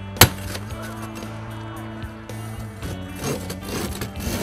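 One sharp strike on a car windshield, a Glass Master glass saw being driven into the glass to start the cut, over background music. From about three seconds in comes irregular scraping as the saw begins working the glass.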